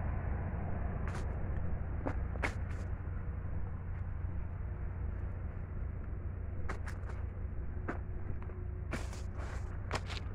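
Knife cutting and prying at the thick peel of pequi fruit by hand: scattered short, sharp clicks and cracks over a steady low rumble.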